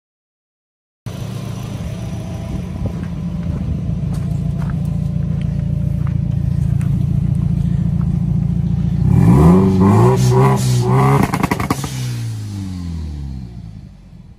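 Subaru Legacy GT-B's turbocharged flat-four engine, converted to a single twin-scroll turbo, running at a steady speed with occasional sharp cracks, then revving up hard about nine seconds in, wavering at high revs with a burst of pops and falling away near the end. This is the sound of a launch-controller test on the remapped ECU.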